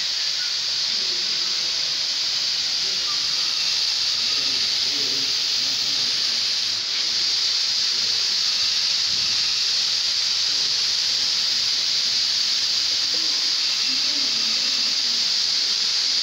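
CO2 fire extinguishers being discharged: a loud, steady hiss of gas venting from the cylinders, with a brief dip about seven seconds in.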